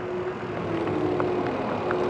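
Mountain bike rolling slowly over gravel, with steady wind noise on the handlebar-mounted camera's microphone and a faint hum that comes and goes.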